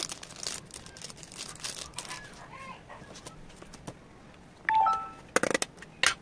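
Clear plastic wrapping crinkling and rustling as it is handled. About five seconds in there is a brief squeaky chirp, then a louder rustle.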